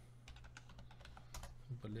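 Faint typing on a computer keyboard: a run of quick, irregular key clicks.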